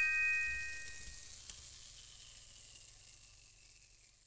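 A few bell-like chime notes from a song intro ring out and fade slowly toward quiet.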